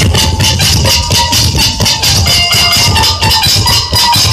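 Live folk instrumental ensemble playing loudly: fast, dense drumming from a barrel drum such as a dhol under a held melody line, with jingling percussion.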